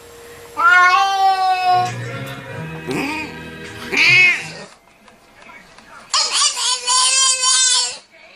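An animal screaming in loud drawn-out cries: one long cry, two shorter arching calls, a pause, then a long wavering cry near the end.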